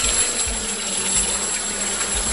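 Steady running water of a garden pond.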